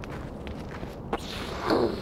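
Footsteps, with a sharp click a little past a second in and a louder, briefly falling scuff or swish near the end.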